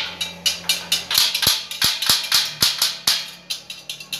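Hammer tapping on the steel bars of an iron gate frame: a quick run of sharp metal strikes, about three a second, each with a short ring.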